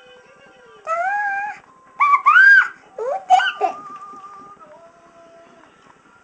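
A toddler's wordless voice: three rising-and-falling vocal sounds about one, two and three seconds in, the middle one loudest, over faint background music.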